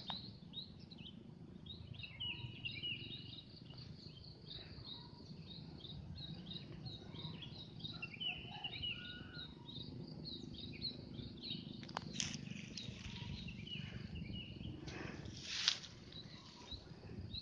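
Small birds chirping in a pine forest: many short, high notes repeating throughout, fairly quiet, over a steady low background hum. A sharp click comes about twelve seconds in, and a brief louder rustle comes near the end.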